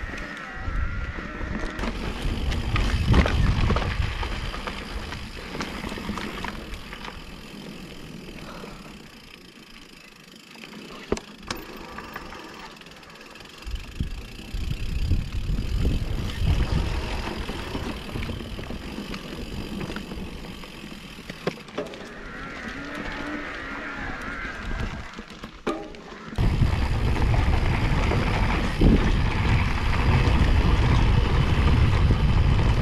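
Mountain bike riding over a grass and dirt trail: wind rumble on the microphone, tyre noise and scattered knocks and rattles from the bike over bumps, louder in some stretches than others. The sound jumps suddenly louder about 26 seconds in.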